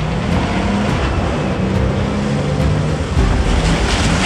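A loud, steady low rumble with a few short, held low notes over it.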